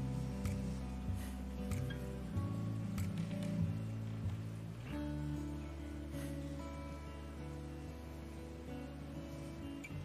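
Slow instrumental background music with long held notes, the chords changing every few seconds.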